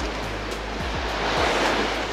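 Sea surf breaking and washing over a rocky shore, the wash swelling to its loudest about midway, with background music underneath.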